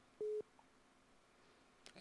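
A single short beep from the call-in phone line: one steady mid-pitched tone lasting about a fifth of a second, marking the handover from one caller to the next.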